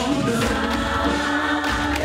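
Live pop music played loud through a PA: several voices sing together in long held notes over a steady bass line.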